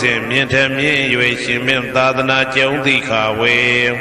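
Buddhist Pali paritta chanting: one voice reciting in a steady, sung chant that stops at the end.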